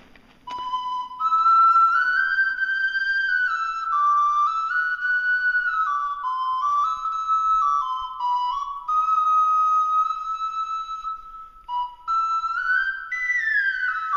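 An ocarina plays a slow melody of held notes that step up and down, starting about half a second in. It breaks off briefly near the twelve-second mark, then resumes with a downward slide between notes.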